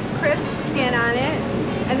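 A person laughing and voicing a drawn-out sound over a steady rush of commercial kitchen background noise.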